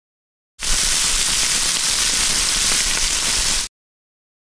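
Steady sizzle of food frying in a pan, starting half a second in and cutting off abruptly after about three seconds.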